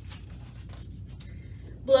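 Pages of a large picture book being turned by hand: a soft papery rustle and slide with small clicks.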